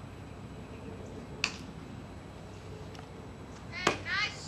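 A softball smacking into a fielder's glove near the end, just after a brief high-pitched sound. A fainter sharp smack comes about a second and a half in.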